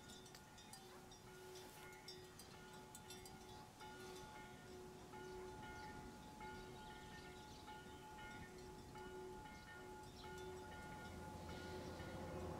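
Faint, soft chime-like tones repeating in a slow, regular pattern about every second and a half. Near the end a vehicle's low engine rumble begins to grow as it approaches.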